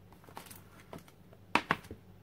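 Clear acrylic stamp block tapping and pressing on an ink pad in its plastic case while a stamp is inked: several light plastic clicks, with two sharper ones about a second and a half in.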